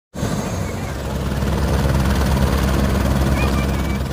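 Helicopter running on the ground with its rotor turning: a loud, steady low beat of the rotor over the engine.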